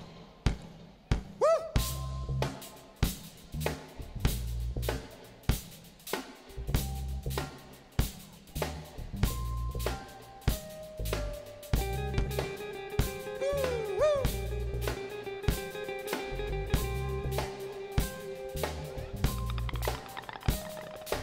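Live band playing the instrumental intro of a song: a drum-kit groove with bass guitar notes underneath. Sustained chord tones join in about halfway through.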